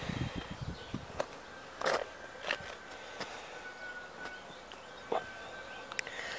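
Quiet outdoor ambience: a soft low rumble near the start, a few faint scattered clicks, and a thin faint steady tone in the background through most of it.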